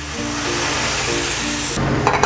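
Clam juice hitting a hot oiled pan, a loud, even hissing sizzle that cuts off abruptly just before the end, with background music underneath.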